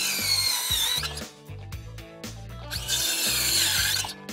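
Bosch 18V cordless circular saw cutting through a wooden board twice, each cut a high whine that sags in pitch as the blade bites into the wood; the first cut ends about a second in and the second starts near the three-second mark. Background music plays underneath.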